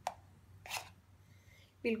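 A metal spoon knocking against a container and a small bowl as petroleum jelly is scooped out: two short knocks about three-quarters of a second apart.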